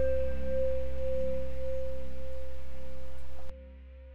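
Closing held synthesizer chord of an electronic progressive-rock track: steady sustained tones over a low bass with no beat. It cuts off abruptly about three and a half seconds in, leaving a faint low tail.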